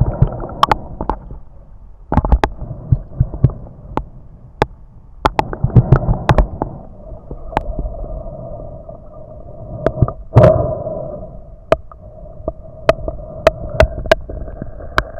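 Underwater sound picked up through a camera housing while a freediver moves: muffled low throbbing swishes in several bursts, the strongest about ten seconds in, with many sharp clicks and knocks and a faint steady hum in the second half.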